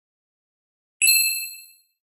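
A single bright, bell-like ding about a second in, ringing with several high tones and fading out within a second: an intro sound effect for the logo card.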